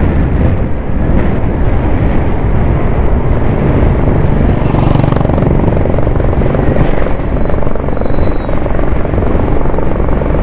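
Heavy wind buffeting on the microphone mixed with road rush from a vehicle travelling fast along a highway: a loud, steady, low rumble that starts abruptly.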